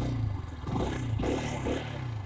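KTM RC 125's single-cylinder four-stroke engine running at low revs, its note steady with a slight drift in pitch.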